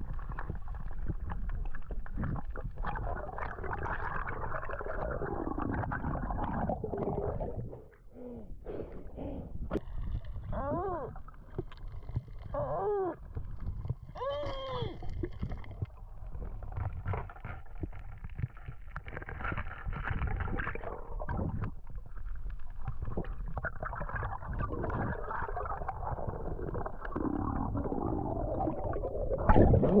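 Muffled underwater noise picked up by a submerged camera: water rushing and bubbling around it. A few short wavering tones come through around the middle.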